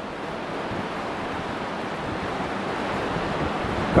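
A steady rushing noise with no distinct events, slowly growing louder toward the end.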